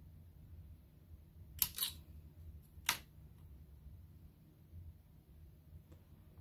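A few light, sharp clicks from handling a polymer clay tissue blade and clay on a cutting mat: a quick pair about one and a half seconds in, then one more about a second later. A low steady hum runs underneath.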